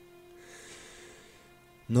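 Quiet background music holding one steady note, with a soft breath-like hiss in the middle of the pause.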